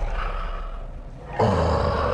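A creature's snarling roar, the kind of sound a movie trailer gives a vampire baring his fangs. It breaks in suddenly and loud about one and a half seconds in, after a quieter fading stretch.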